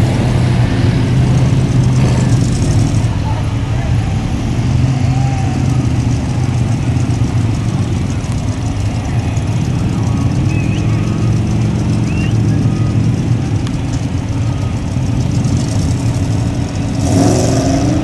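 A lifted mud truck's engine running loudly with a deep, steady drone, with people talking over it.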